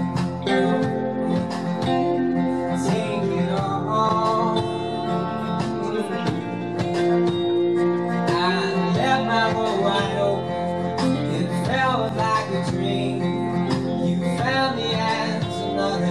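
Acoustic guitar strummed steadily in a live folk song, with a male voice singing at times over it.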